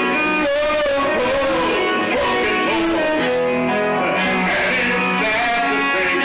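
Live band music led by acoustic guitars, played loud and steady, with sustained, bending guitar notes.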